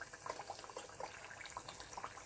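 Tempura-battered pineapple rings deep-frying in hot oil: a steady sizzle with many small, quick crackles.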